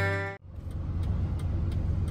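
A guitar music track fades out in the first half second. Then comes the steady low rumble of a camper van's engine and road noise, heard from inside the cab while driving, with faint ticks about four times a second.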